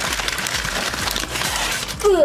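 Crumpled brown kraft packing paper crinkling and rustling continuously as it is handled and moved aside.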